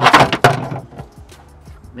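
Loose plastic truck-interior trim pieces clattering against a plastic bed liner as they are handled. There is a loud clatter right at the start and a second, smaller knock about half a second later, over background music.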